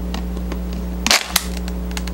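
Thin plastic water bottle crackling as it is squeezed flat by hand, with a dense burst of crinkling about a second in. The cap is off, so the air escapes and the bottle gives way. A steady low hum runs underneath.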